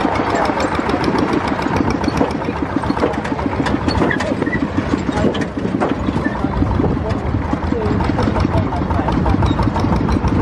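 Tractor engine running steadily with a rapid, even beat as it tows a loaded passenger trailer along a bumpy dirt road.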